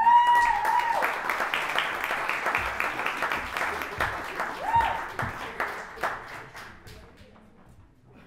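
Small audience applauding, with a high whoop at the start and another about halfway through; the clapping thins out and fades over the last couple of seconds.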